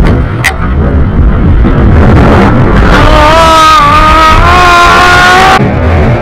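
Loud wind buffeting an action camera's microphone during a rope-jump free fall and swing, under music. About halfway through a sustained pitched tone with a slight rise comes in over the rush, then cuts off abruptly near the end.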